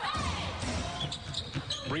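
A basketball being dribbled on a hardwood court, a string of short bounces, with players' voices calling out on court.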